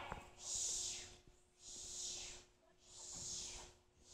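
A person making a soft 'shh' shushing sound three times, about 1.3 seconds apart.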